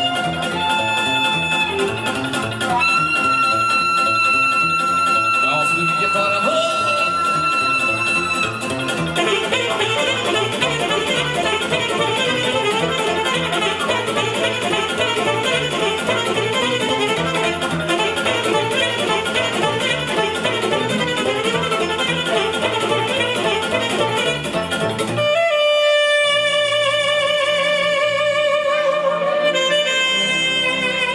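Alto saxophone playing a Romanian folk-style party instrumental live over keyboard and rhythm backing. It starts with long held notes, then runs into a busy, fast passage. About 25 seconds in the backing drops out while the saxophone holds one long note with vibrato, and then the band comes back in.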